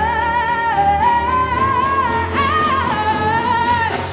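A woman's solo voice singing a jazz-blues song, holding long notes with vibrato and stepping up in pitch about halfway through before settling back, over a live electric bass accompaniment.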